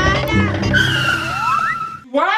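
Upbeat intro music that breaks off under a cartoon skid sound effect: a hissing screech with a long, slowly falling squeal, crossed near the end by a short rising whistle.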